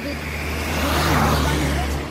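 A motor vehicle passing close by on the road: its engine and tyre noise swell to a peak about a second in and then fade, over a low steady engine hum.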